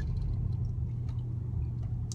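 Steady low rumble of a car's cabin, the engine and road noise heard from inside the car.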